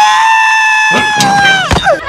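A cartoon character's long, high crying wail, the King Pig cry from Angry Birds Toons, held at one pitch for most of two seconds and then dropping off near the end.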